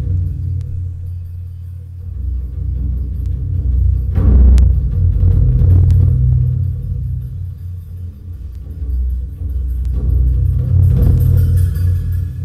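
Dark, rumbling performance music built on a deep pulsing bass drone, swelling louder about four seconds in and again near the end.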